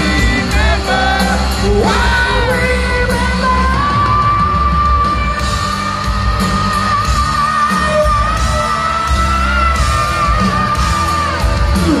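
Live hard rock band playing a power ballad, the lead singer holding one long high note with vibrato for about eight seconds before it drops off near the end, over drums and guitar, with the crowd yelling.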